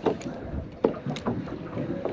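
Scattered small clicks and knocks from a fishing rod and reel being handled as the lure is cast and let down, over a faint steady hiss. The sharpest click comes a little under a second in.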